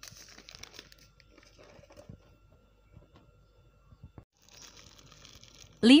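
Faint crinkling of a plastic seasoning packet with scattered light clicks, and a soft rustle near the end, as ground pepper is shaken onto boiled noodles.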